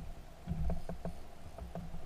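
Water slapping and lapping against the hull of a small aluminium boat, with light, irregular ticking a few times a second.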